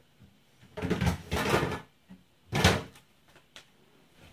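Handling noises from someone out of view: a scraping rustle lasting about a second, then a single sharp knock with a short ring, like a door or cupboard being shut.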